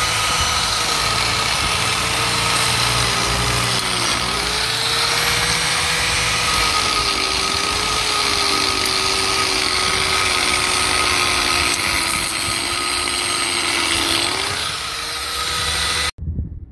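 Angle grinder raking old mortar out of the joints of a brick wall, the disc grinding steadily through the joint. The motor's whine sags under load about four seconds in and again over the later part, recovering each time.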